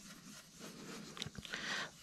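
Faint swishing of a soft ink-blending brush rubbed over cardstock through a stencil, with a couple of small clicks past the middle.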